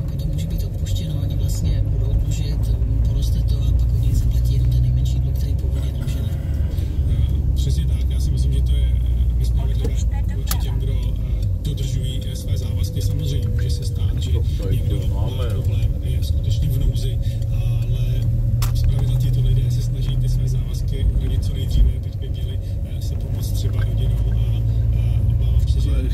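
Car interior road noise while driving: a steady low rumble of engine and tyres, with one brief thump late on.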